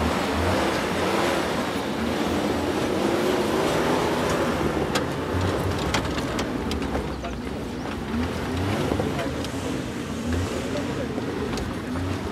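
Suzuki Jimny JA11's small three-cylinder turbo engine working at low speed over rocky ground, its note rising and falling as the throttle is fed in and eased off. Several sharp clicks about halfway through.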